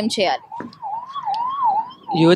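A siren-like wavering tone, its pitch swinging quickly up and down several times for about a second and a half.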